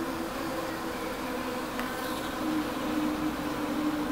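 Honeybees buzzing at the entrance of a hive: a steady hum with several slightly wavering pitches layered in it.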